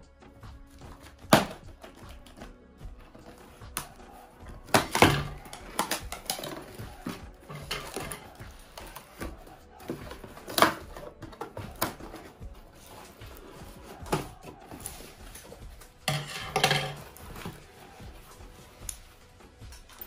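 Scissors cutting through the packing tape of a cardboard ration box, then the cardboard flaps being pulled open and paper handled inside, heard as scattered snips, knocks and scrapes. Faint music plays underneath.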